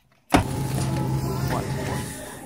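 After a moment of silence, sound cuts in abruptly about a third of a second in: steady supermarket background noise with a constant low hum, as the camera moves along a refrigerated display aisle.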